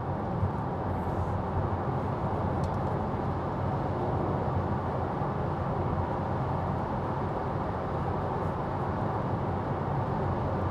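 Steady road noise inside the cabin of a Tesla Model 3 cruising at about 65 mph: a constant tyre and wind rush with no engine note and no changes.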